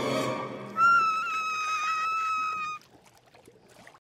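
A cartoon pony character's high, thin scream, held on one steady pitch for about two seconds, starting just under a second in and cutting off suddenly.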